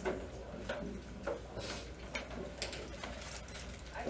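Faint classroom room noise: a few scattered small clicks and rustles over a low, steady hum.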